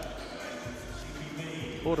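A basketball being dribbled on a hardwood court, over faint background music.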